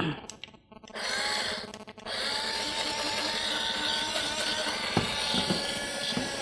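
Small personal bottle blender grinding dry rolled oats into powder: a few clicks, a short first run of the motor about a second in, then a steady run from about two seconds in.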